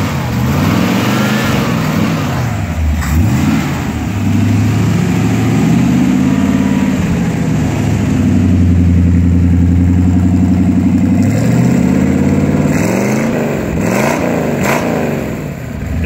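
Ford 302 (5.0-litre) V8 in a 1928 Ford Model A street rod being revved: a few quick blips, then held at raised revs for several seconds, then several more quick blips near the end.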